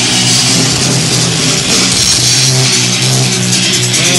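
Loud live rock music: sustained, ringing electric guitar chords under a bright, noisy wash.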